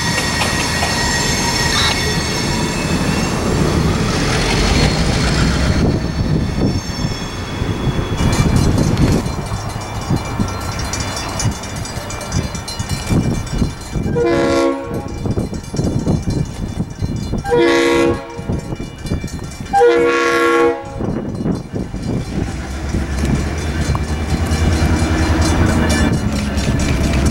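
EMD GP18 diesel locomotive running, with a high whine over the first few seconds, then three horn blasts of about a second each, spaced two to three seconds apart, about halfway through. Its engine rumble grows louder near the end as the locomotive comes closer.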